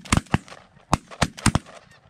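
A rapid, irregular volley of shotgun blasts from several hunters firing at once, about six shots in the first second and a half, two of them almost together near the middle.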